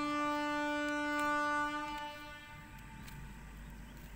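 A horn sounding one long steady note with many overtones, fading out about two seconds in and leaving a faint low hum.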